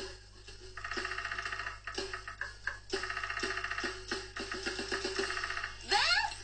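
Cartoon drum kit being played with single strokes, broken twice by bursts of very fast, even wooden tapping, a woodpecker drumming, about a second in and again at about three seconds. Near the end the drumming speeds into a quick run of strokes.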